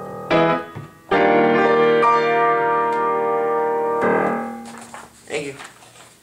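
Upright piano: a short chord, then a full chord struck about a second in and held, ringing out and slowly fading for about three seconds. Softer, irregular handling sounds follow near the end as the sheet music on the stand is rustled.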